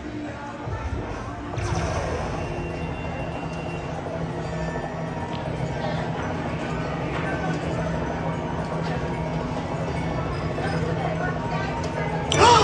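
Wonder 4 Spinning Fortunes slot machine playing its bonus-wheel music and sound effects while the wheel feature spins. The sound swells about two seconds in and then holds steady.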